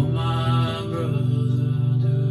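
A man singing a long, wordless sung note over strummed guitar chords, with a fresh strum at the start.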